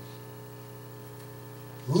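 Steady electrical mains hum: a low, even buzz with a ladder of overtones that holds at one level.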